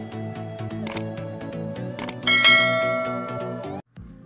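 Background music with a steady beat, overlaid by subscribe-button sound effects: clicks about one and two seconds in, the second followed by a ringing bell-like ding that lasts over a second. Everything cuts off abruptly just before the end.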